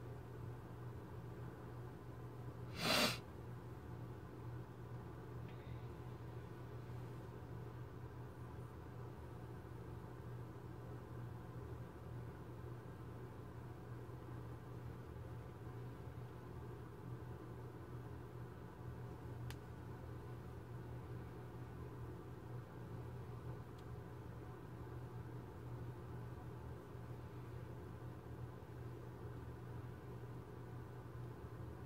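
Faint steady hum throughout, with one short knock about three seconds in.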